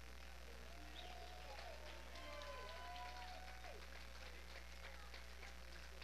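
Steady low electrical hum with faint, indistinct voices murmuring in the room.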